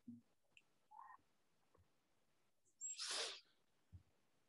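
Near silence broken by one short, noisy breath about three seconds in, a person breathing out sharply through the nose or mouth, with a few faint soft knocks and a brief faint sound about a second in.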